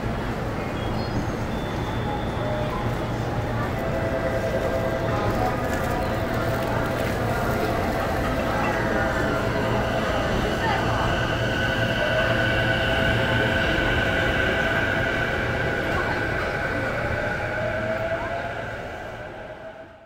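JR electric commuter train at a platform, its doors shutting as it moves off, with a steady rumble throughout. Whining motor tones come in about four seconds in and grow stronger and higher about ten seconds in. The sound fades away at the very end.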